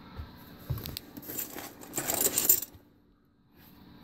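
Small flat steel T-nut plates clinking and rattling against each other as they are handled: light metallic clicks at first, then a denser jingle about two seconds in.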